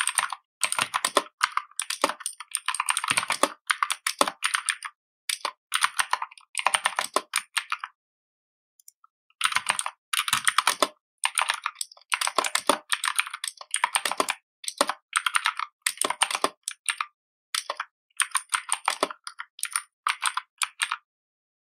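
Computer keyboard typing in quick runs of keystrokes, with a break of about a second and a half near the middle.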